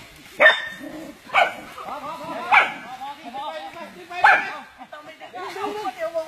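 A dog giving four short, sharp barks spread irregularly over a few seconds, with people talking underneath.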